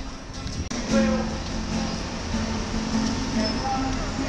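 Music with people's voices; a brief gap about three quarters of a second in, after which it carries on louder.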